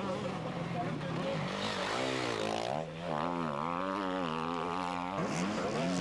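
Off-road enduro motorcycle engine being ridden hard. From about two seconds in its pitch rises and falls repeatedly with the throttle, and it fades away about five seconds in.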